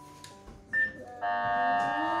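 A child's voice through a toy voice-changer megaphone, turned into a loud, buzzy, electronic-sounding drone that sets in about a second in, just after a short high beep. Quiet background music plays before it.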